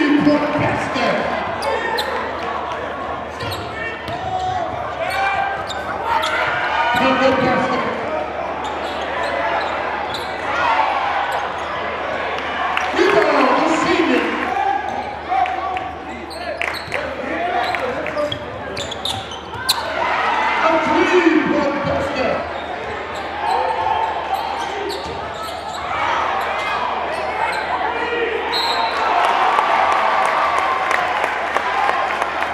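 Live basketball game sound in a gymnasium: a basketball bouncing on the hardwood floor with sharp knocks, under continuous crowd chatter and shouts from players and spectators.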